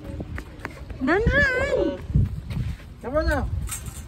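Two drawn-out, high-pitched wordless calls from a child's voice: the first about a second in, long and wavering up and down, the second a shorter rise-and-fall near three seconds.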